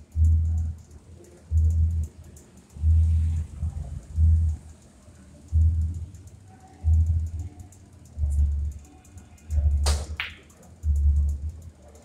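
Background music with a heavy, slow bass beat, a low thump about every second and a half. About ten seconds in comes a single sharp click of a pool shot, the cue ball striking a billiard ball.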